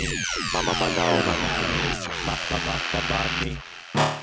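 Electronic synth sweep: a dense cluster of tones all gliding downward in pitch together over about three seconds. It dies away shortly before the end, then a few clicks follow.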